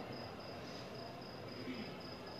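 Faint cricket chirping, a high, even pulse at about four chirps a second.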